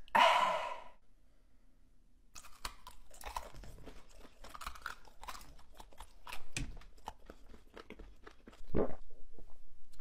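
A person chewing and crunching a spicy tortilla chip, the One Chip Challenge chip, with many short crisp crunches from about two and a half seconds in. There is a loud breathy sound with the mouth open at the start, and a louder burst of sound just before the end.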